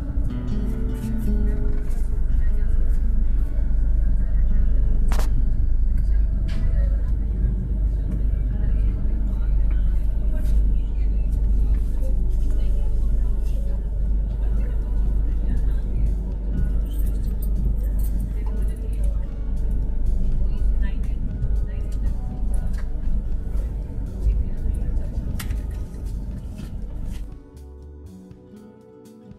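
Steady low rumble of the Rajdhani Express rolling slowly through a station, heard from inside the coach, with voices and background music underneath. A sharp click sounds about five seconds in.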